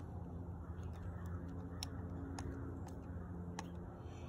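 A few sharp, light clicks of a screwdriver working as an aftermarket foam air filter is tightened onto a Stihl chainsaw's carburettor, over a steady low hum.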